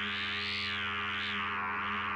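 A steady electronic drone with a slowly wavering sweep above it, a synthesized sound effect for a swirling portal.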